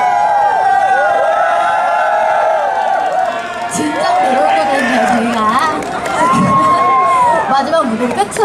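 Crowd cheering and shouting, with many high voices overlapping.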